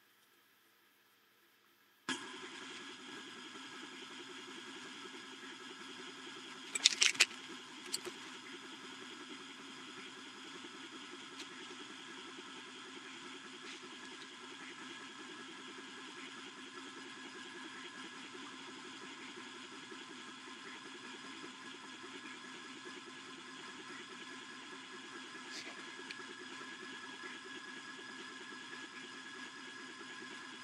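Wainlux K10 5 W laser engraver running through an engraving job: a steady mechanical hum that starts suddenly about two seconds in. A few sharp clicks come about seven and eight seconds in.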